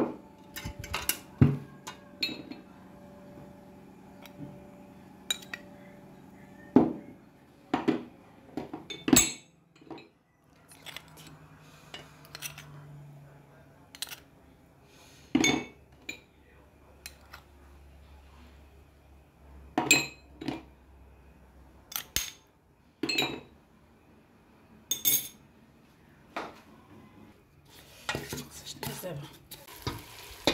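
A metal spoon clinking and tapping against a stainless steel pressure-cooker pot and small spice bowls as spices are added over chicken: about fifteen sharp, irregular clinks. Near the end, food starts sizzling as it fries in the pot.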